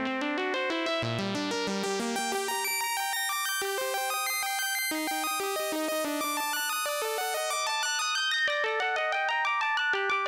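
Cre8audio East Beast monophonic analog synthesizer playing a fast run of short, bright notes that step up and down in pitch. Its tone grows brighter and then darker as its knobs are turned.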